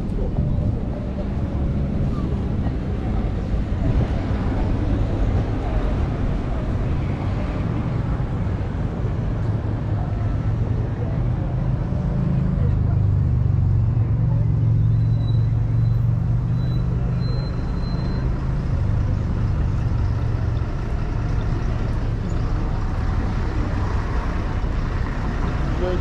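City street ambience: a steady rumble of road traffic with passers-by chatting. A heavier vehicle engine swells louder about halfway through and fades again.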